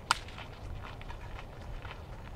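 Footsteps crunching on a gravel path, a few steps a second, with a single sharp snap just after the start that is the loudest sound.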